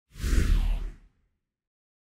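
A whoosh transition sound effect with a deep low rumble under a hiss. It lasts about a second and falls in pitch as it fades.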